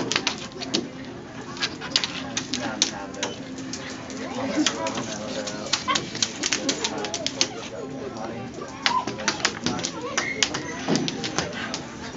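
Quick, irregular clicking of puppies' claws on a hard tile floor as several puppies scramble and play together.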